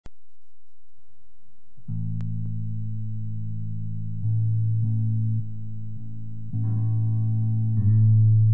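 Instrumental jam on bass guitar and guitar, starting about two seconds in with long held low notes that shift every second or so, growing fuller near the end.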